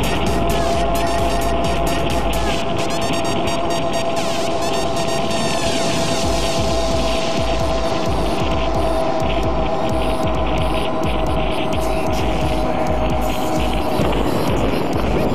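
Enduro motorcycle engine running at a steady cruising speed, heard from on board the bike, its pitch held level and dropping slightly near the end.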